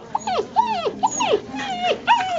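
A puppy whining and yipping in a quick run of short, high cries, each dropping in pitch, about three or four a second.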